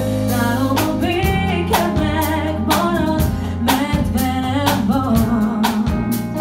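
A female singer performing live with a funk band, backed by drum kit, bass and guitar. The drums keep a steady beat.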